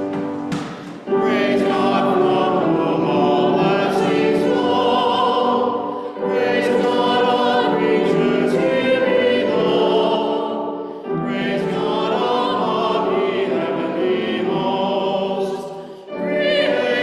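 Two voices singing a classical-style sacred piece with grand piano accompaniment, held notes sung with vibrato, in phrases of about five seconds with short breaks between them.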